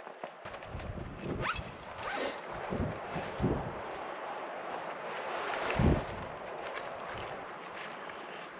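Sagebrush branches and clothing rustling as they are handled, with a few short low thumps, the loudest about six seconds in.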